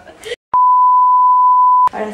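A single steady electronic beep at one pure pitch, lasting just over a second; it starts abruptly about half a second in, right after a moment of dead silence, and cuts off abruptly near the end.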